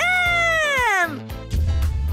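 A woman's drawn-out, pleading wail of "아 사장님", sliding down in pitch over about a second; music starts about a second and a half in.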